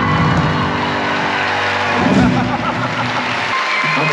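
Theatre audience applauding and cheering as the song's last chord rings out, the low notes cutting off near the end.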